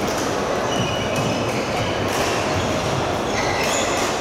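Steady din of a busy indoor badminton hall, with short high squeaks of court shoes on the floor scattered through it.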